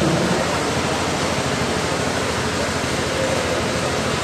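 A steady, even rushing noise with no distinct events.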